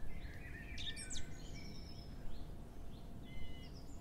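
Outdoor ambience: a steady low rumble with scattered faint bird chirps, several in the first second and a half and a few more after about three seconds.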